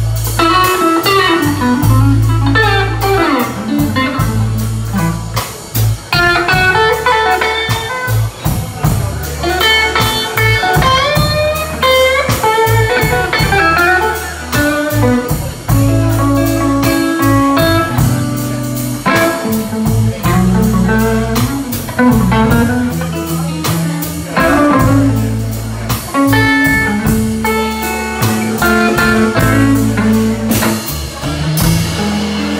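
Live electric blues band playing: electric guitar over electric bass guitar and a drum kit, with notes bending up and down in the melody line.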